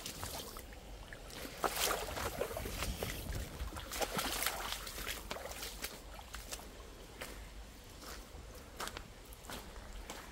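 Footsteps sloshing and splashing through a shallow stream and along its muddy bank, with the stream trickling. The steps come unevenly and are busiest and loudest in the first half.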